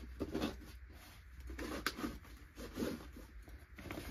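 Rustling and handling of a fabric range bag as a hand digs inside it for paper targets, with one sharp click a little under two seconds in.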